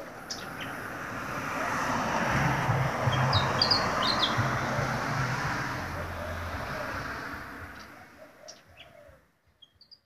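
A vehicle passes by, its engine and tyre noise swelling to a peak about three seconds in and fading away by about nine seconds. Birds chirp a few times near the loudest point and again at the very end.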